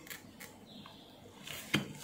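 Mostly quiet, with a faint tap about half a second in and a sharper click near the end, from a multimeter test probe and circuit board being handled.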